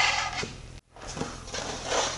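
Melamine fixture board with a maple guide bar sliding across the table saw's metal top, a brief scraping rub with a slight squeak that fades. It cuts off abruptly, leaving faint handling ticks.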